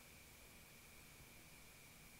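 Near silence: faint steady hiss with a thin, steady high-pitched tone.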